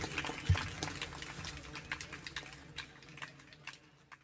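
Scattered clapping from a small audience after a live song, thinning out and fading away as the recording ends. There is a low steady hum under it and a single low thump about half a second in.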